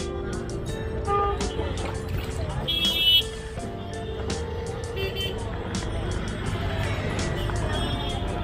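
Busy roadside street ambience: traffic noise, people talking and music, with a brief loud high-pitched horn-like blast about three seconds in and scattered clinks of glassware at a juice stall.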